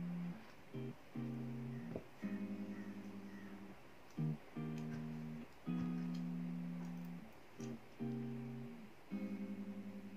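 Background music: softly plucked guitar chords, each ringing and fading before the next, about one every second or so.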